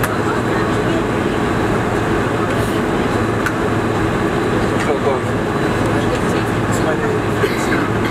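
Steady cabin noise of a Boeing 747-400 airliner taxiing after landing, a constant low hum of the engines and cabin air, with passengers talking in the background.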